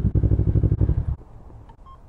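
Sport motorcycle engine idling, then shut off about a second in. A short electronic beep from the gas pump's keypad follows near the end.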